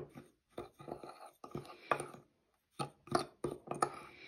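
Metal measuring spoon stirring and scraping a granular salt-and-spice blend in a bowl: a run of short, irregular scrapes and clicks with brief gaps between them.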